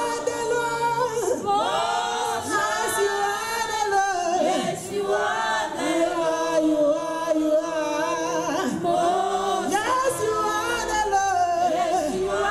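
Small gospel choir singing a Nigerian-style Christian spiritual song without instruments, with women's lead voices carried over microphones above the group's harmony.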